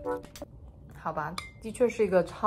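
A metal fork clinks once against a china bowl about two-thirds of the way through, with a short ring after it, among background music and voice sounds.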